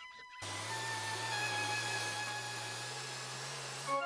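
A motor-driven machine running with a steady low hum and hiss, starting abruptly about half a second in and cutting off suddenly just before the scene changes.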